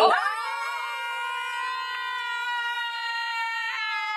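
A person's voice holding one long, high whoop for about four seconds, starting with a quick downward glide into the note.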